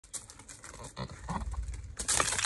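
A goat's hooves stepping on gravel: soft, irregular crunches and knocks that grow busier from about a second in.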